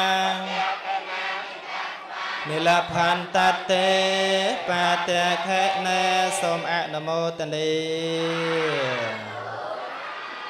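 A Buddhist monk chanting through a microphone in long, held melodic notes. The chant pauses about half a second in and resumes about two seconds later. Near the end the final note slides down in pitch and fades.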